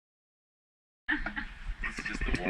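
Dead silence for about the first second, then the sound cuts in suddenly with voices laughing.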